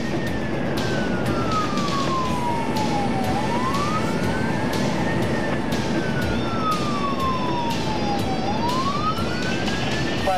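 Emergency vehicle siren in wail mode, heard from inside the responding vehicle's cabin. Its pitch slowly rises and falls about every five seconds, over steady road noise.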